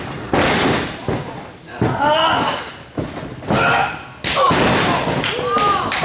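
Wrestlers' bodies landing on a wrestling ring's mat: a few heavy thuds a second or two apart, with shouts and yells between them.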